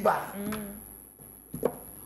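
A voice trailing off, followed about a second and a half later by a single sharp knock.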